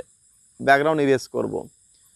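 A man speaking a short phrase in Bengali, with a faint steady high-pitched hiss underneath.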